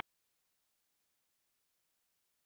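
Dead silence: no sound at all.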